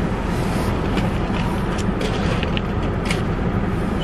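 Car engine idling steadily, heard through the open driver's door, with a few short crunches of footsteps on packed snow.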